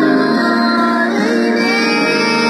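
Two boys singing a Christian worship song together into a microphone, holding long notes that slide between pitches.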